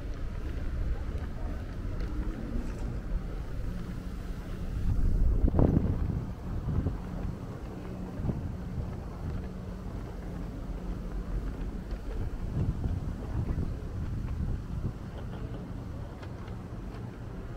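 City street ambience: a low, steady traffic rumble with wind buffeting the microphone, and a louder rushing swell about five to six seconds in.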